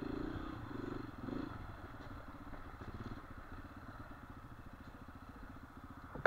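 Dirt bike's single-cylinder engine running at low speed with steady firing pulses, a few throttle swells in the first second or so, then easing off to a quieter idle as the bike slows.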